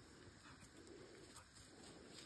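Near silence, with a few faint, soft low calls spread through it.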